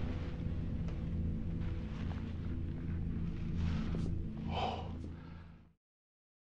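A low, steady droning film-score bed with a faint click about four seconds in and a short breathy noise just after. It fades out and stops just before the end.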